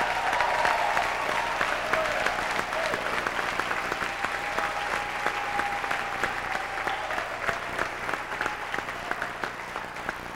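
Congregation applauding: many hands clapping together, easing off slightly toward the end.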